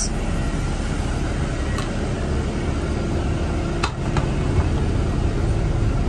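Parked MCI E4500 motorcoach idling, heard inside the passenger cabin as a steady low rumble and hum, with two light clicks about four seconds in.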